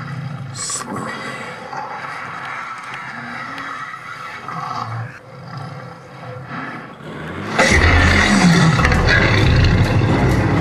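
Film sound effects of dinosaur roars and growls. About three-quarters of the way through they turn suddenly much louder and deeper.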